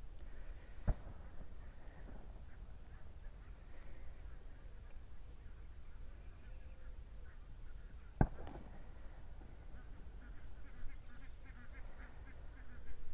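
Two gunshots, one about a second in and another about seven seconds later, each a sharp crack followed by a short echo, with ducks calling throughout.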